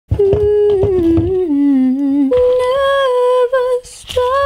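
A woman humming a slow tune: long held notes stepping down in pitch, then a jump up to a higher note held with a slight waver, broken off briefly near the end.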